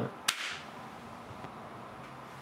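A single sharp clap about a quarter of a second in, marking the start of a take, then steady quiet room tone.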